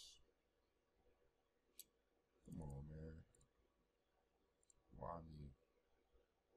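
A few faint, sharp computer mouse clicks spread through near silence, with two short low murmurs of a man's voice between them.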